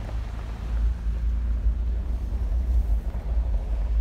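Steady low rumble of a car driving along a gravel road, its tyres and engine heard from inside the vehicle.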